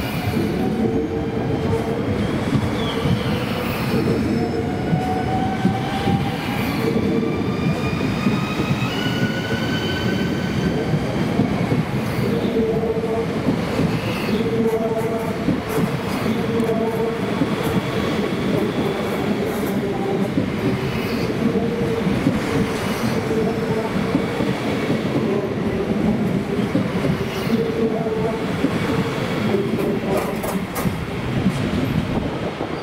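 NS ICNG (Alstom Coradia Stream) electric multiple-unit train pulling out and running past: a steady rumble of wheels on rail, with the traction motors' whine rising in pitch as it accelerates over the first ten seconds or so. Wheels click now and then over rail joints.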